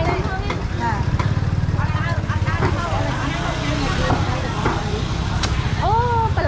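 A small motorcycle engine running at idle close by, a steady low pulsing, under the chatter of voices in a busy market.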